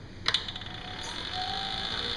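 A wood lathe switched on with a sharp double click, then its motor spinning up into a steady hum with a higher whine building.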